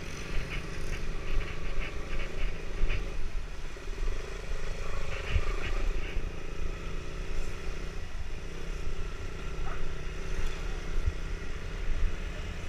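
Motorcycle engine running as the bike rides along, with wind buffeting the camera's microphone.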